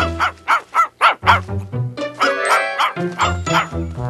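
Cartoon dog barking in a quick run of short, excited barks, about four a second, over the first second and a half, with a cartoon music score playing throughout.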